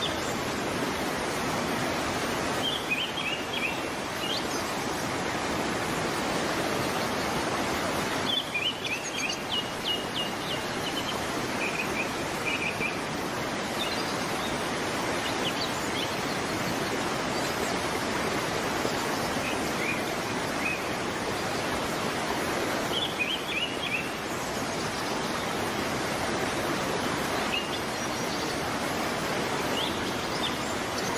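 Steady rush of water from a broad waterfall cascading over a ledge, with small birds chirping in short high phrases every few seconds.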